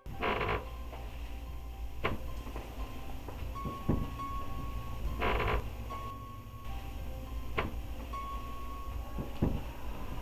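A low steady drone with faint held tones, broken by a handful of creaks and knocks about every one to two seconds, the longest at the start and about five seconds in.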